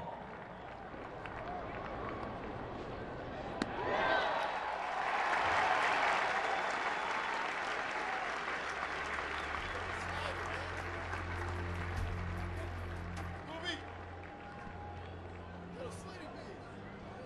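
Ballpark crowd cheering and applauding, swelling about four seconds in and slowly fading under a murmur of voices. A low steady hum comes in past the middle.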